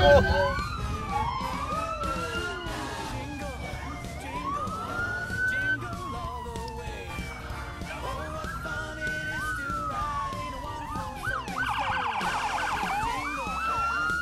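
Several police sirens wailing at once, their pitches sliding up and down out of step with each other, with a fast yelp near the end.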